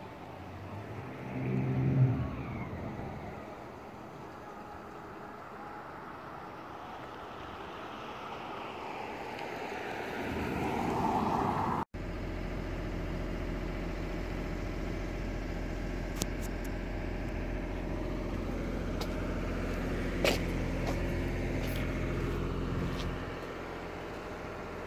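Street traffic: a car passes, its noise swelling over several seconds to a peak about eleven seconds in. After a sudden cut, a steady low mechanical hum runs on, with a few light clicks.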